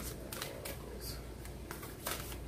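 A deck of oracle cards being shuffled by hand, with a handful of irregular soft flicks and slaps as the cards are passed from one hand to the other.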